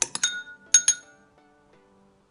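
Metal spoon clinking against a ceramic bowl while stirring paint into slime: five sharp, ringing clinks in the first second, three close together and then two more.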